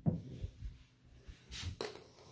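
Handling noise as objects are moved and bumped: a soft thump right at the start, a couple of light knocks, then a brief rustle about one and a half seconds in.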